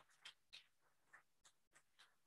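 Near silence, with a few faint, brief sounds over room tone.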